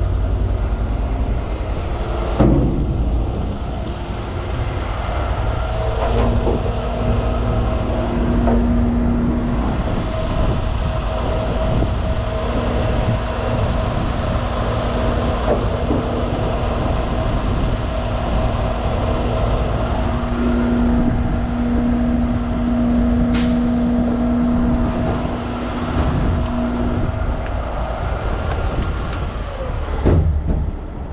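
Diesel engine of a Miller Industries Vulcan heavy rotator tow truck running steadily with a deep rumble. A steady hum joins it about six seconds in and stops near the end, and a short sharp click or hiss comes about two-thirds of the way through.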